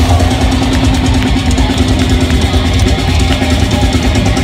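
Thrash metal band playing live at full volume: distorted electric guitars holding a low riff over a pounding drum kit, heard from the audience.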